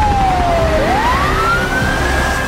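A siren wailing: one tone falls, then about a second in sweeps back up and holds high, over a low steady rumble.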